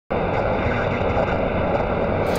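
Video-intro sound effect: a steady, dense rumbling noise with no clear pitch that cuts in abruptly at the very start.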